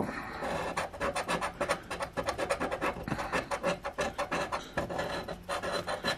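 A coin scratching the latex coating off a lottery scratch ticket, in quick, even back-and-forth strokes, several a second, uncovering the winning numbers.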